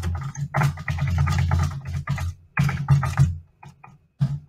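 Typing on a computer keyboard: a quick run of keystrokes over a steady low hum, thinning to a few scattered clicks after about three seconds.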